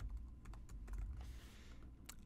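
Faint typing on a computer keyboard: a quick, irregular run of keystroke clicks as a short name is typed in.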